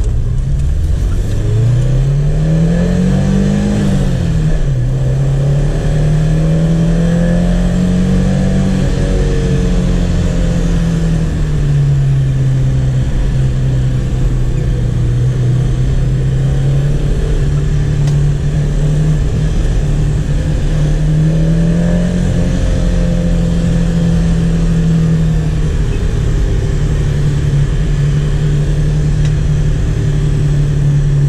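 A 1989 Chevrolet Chevette 1.6 SL's four-cylinder engine, heard from inside the cabin, pulling the car along. Its revs climb over the first four seconds, drop sharply, and climb again. They drop again about eleven seconds in, then settle into a steady cruise with a brief swell and fall later on.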